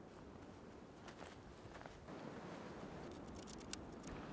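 Faint background hiss with a few light clicks and crackles, a little louder in the second half.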